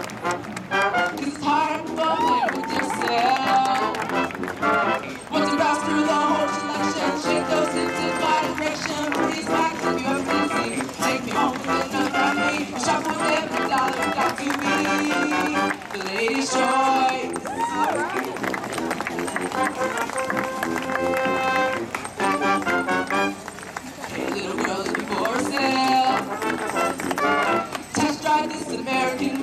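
High school marching band playing a show tune: brass chords over percussion, with a singer's amplified voice heard in places.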